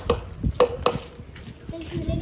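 A few sharp taps or knocks, each with a brief ring, and a short voice near the end.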